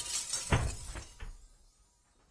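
The end of a telephone being smashed: shattering pieces clattering and settling, with two smaller knocks about half a second and a little over a second in, dying away soon after.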